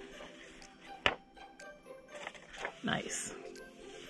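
Paper and a carved rubber printing block being handled on a table over faint background music, with a sharp tap about a second in and a smaller knock near three seconds.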